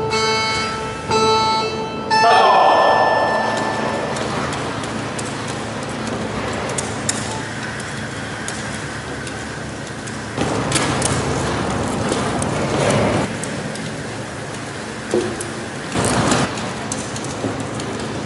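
Four beeps from a timer start a timed run: steady electronic tones, the last one longer. A loud shout comes about two seconds in. After that a crowd of onlookers murmurs and calls out, swelling louder twice near the middle and the end.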